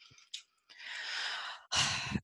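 A woman drawing a breath in the pause between sentences: a soft hiss about a second long, with no voice in it.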